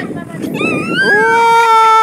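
A child's voice on a playground slide: a short rising call, then about a second in one long held high-pitched cry that falls slightly in pitch.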